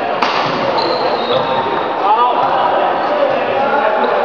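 Badminton play in a large hall: a sharp racket strike on the shuttlecock about a quarter second in, followed by brief high squeaks of court shoes on the floor, over echoing background voices.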